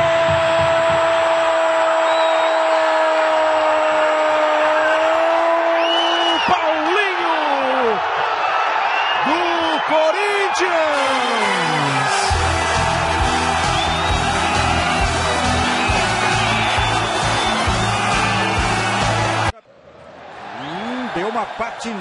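A football commentator's goal cry, one long 'Gol!' held on a single pitch for about six seconds over stadium crowd noise, followed by more excited shouting. About twelve seconds in, music with a steady beat takes over and cuts off suddenly shortly before the end, when crowd noise returns.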